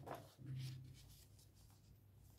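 Faint scratching of a ballpoint pen on paper as it draws lines and circles, in short strokes.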